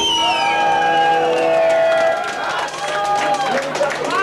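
Club audience shouting and cheering between songs, several voices yelling long calls over one another.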